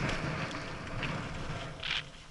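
Mountain bike rolling down a dry dirt trail, heard from a camera on the bike or rider: a steady rush of wind and tyre noise with scattered small clicks and rattles from the bike. The rush eases off near the end.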